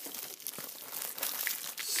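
Plastic packaging crinkling as it is handled, a busy run of small crackles that grows a little louder.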